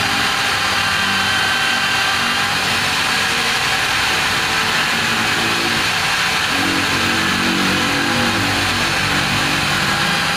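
Angle grinder running steadily while a Mitsubishi Lancer rocker arm is held against its spinning wheel to clean it, giving a continuous hiss with a wavering low motor hum.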